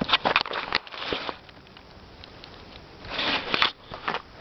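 Close rustling and crackling of grass and handling noise right at the microphone, in a few short bursts: a run of quick crackles at the start, another burst about a second in, and a longer one near the end.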